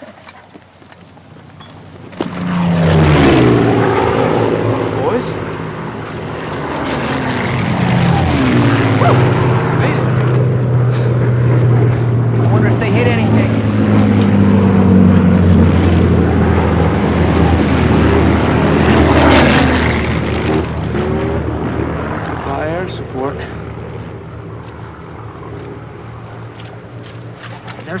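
Piston-engine propeller aircraft flying low overhead with a steady engine drone. It comes in about two seconds in, swells several times as the planes pass, and eases off near the end.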